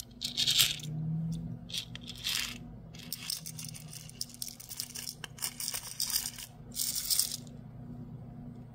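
Pointed-back rhinestones sliding and rattling in a white plastic triangle tray, then poured into a small plastic jar with about three seconds of dense clinking in the middle; a last short rattle comes near the end.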